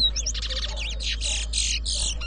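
Caged towa-towa seed finch singing a fast, high-pitched run of trills and whistled notes, one full song phrase of the kind counted in a whistling competition.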